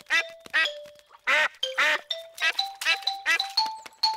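Cartoon ducklings quacking in a run of short quacks, two louder ones about a second and a half in. Under them a light background tune plays, its held notes stepping up in pitch.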